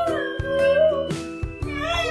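A beagle howling in long, wavering notes that rise at the start and again near the end, over background music with a steady beat.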